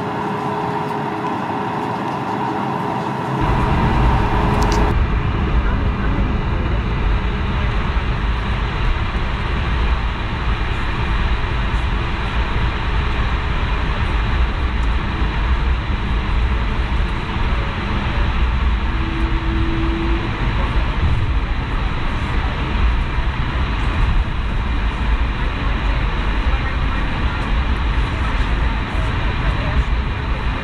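Airbus A220 taxiing on its Pratt & Whitney PW1500G geared turbofans, a steady rumble with a deep low end. The first few seconds hold a lighter hum with a steady mid-pitched tone before the rumble comes in.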